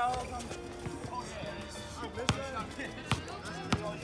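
A basketball strikes the rim at the start, then bounces a few times, sharp and unevenly spaced, as it is dribbled on an outdoor court.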